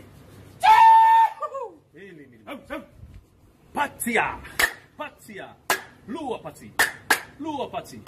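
Men's voices leading a clapping chant: a loud held call about a second in, then chanted syllables punctuated by sharp hand claps from about four seconds in, roughly two claps a second.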